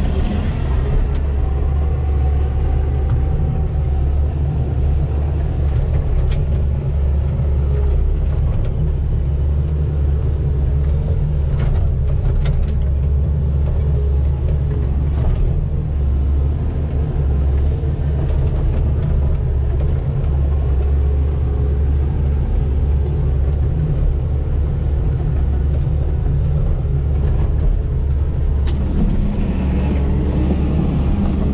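Volvo EC220DL hydraulic excavator's diesel engine running steadily while digging, heard from inside the cab as a loud low drone, with a few light knocks along the way.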